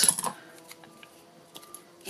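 A bone folder pressing down on a small layered cardstock piece on a craft mat: a short burst of rubbing and clicks at the start, then a few faint light taps as the piece is handled.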